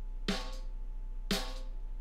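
Recorded snare-drum track played back on its own: two hits about a second apart, each with a short ring. The Waves Factory Snare Buzz plugin is switched on, adding a simulated snare-wire buzz as if from a bottom mic.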